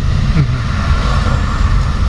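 Car cabin noise: a steady low rumble of engine and road heard from inside a moving car.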